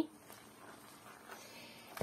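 Faint wet squishing of a spoon stirring grated raw potato batter in a plastic bowl.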